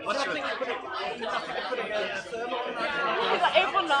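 Speech: a woman talking close to the recorder, with other voices chattering in the background.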